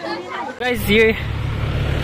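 Steady low rumble of street traffic that starts suddenly under a second in, under a man's voice.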